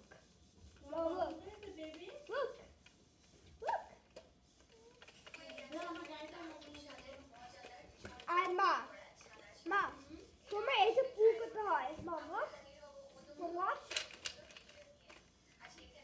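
A child's voice making wordless vocal sounds in short bursts with sliding pitch, with a sharp click about twelve seconds in.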